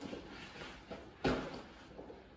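Ursack AllMitey bear bag and its drawcords being handled: faint fabric rustling, with one louder, brief rustle a little past the middle.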